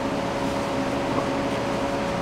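A machine running steadily in the background: an even hum with one constant tone and no change in level.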